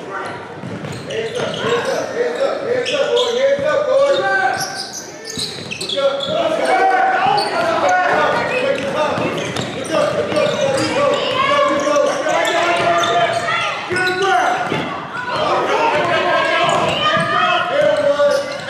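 A basketball bouncing on a hardwood gym floor during play, with many short strikes, under steady shouting and calling from players and spectators, all echoing in a large gym.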